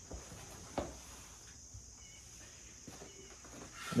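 Quiet workshop room tone with a thin steady high hiss, broken by a short light knock a little under a second in and a few faint ticks as wooden bowls are handled on the workbench.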